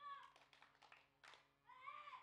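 Faint, high-pitched children's voices: short wavering calls, with a longer wavering cry starting near the end.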